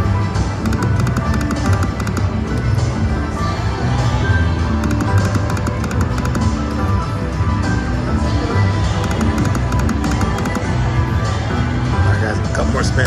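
Triple Coin Treasure slot machine playing its game music, with three bursts of rapid ticking as the reels spin and stop.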